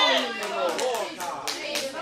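A few people clapping irregularly, about half a dozen sharp claps, over voices calling out.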